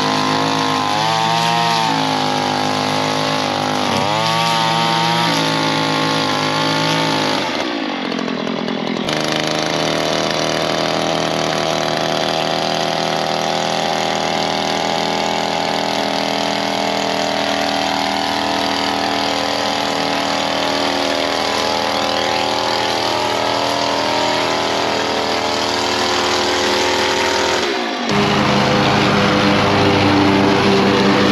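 Gas string trimmer engine running, revved up and down twice in the first few seconds, then held at a steady speed while it cuts grass along a sidewalk edge. It breaks off briefly about eight seconds in. Near the end it gives way to the steady engine of a Toro stand-on mower.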